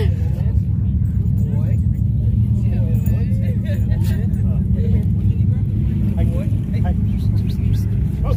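A nearby off-road vehicle engine idling with a steady low rumble, with people's voices in the background.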